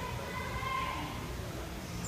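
Indistinct voices of people talking in the background over a steady low rumble.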